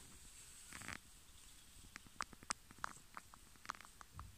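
Faint handling sounds: scissors being brought up and set against a tarantula egg sac, with a short soft rustle just before one second in, then a scatter of light ticks and clicks from the blades and fingers.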